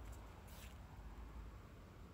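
Very quiet outdoor background: a steady low rumble, with one brief faint high-pitched sound about half a second in.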